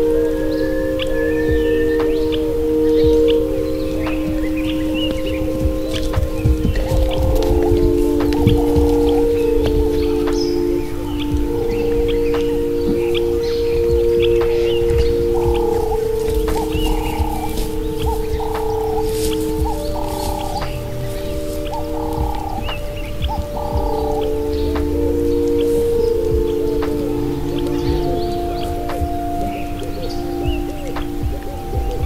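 Slow ambient meditation music of long, held synthesizer chords that shift every few seconds, with short bird chirps scattered over it.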